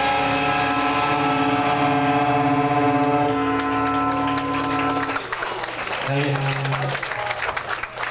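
A band's electric guitars and bass hold one ringing chord at the end of a song, which cuts off about five seconds in. Crowd clapping and cheering follow, with a short low guitar note sounding through it.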